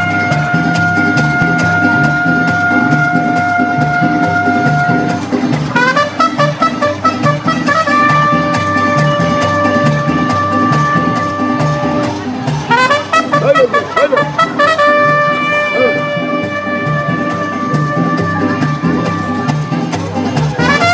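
Live mariachi band playing: long held trumpet notes over a steady bass rhythm and strummed guitars, with quick flurries of notes about six seconds in and again around thirteen seconds.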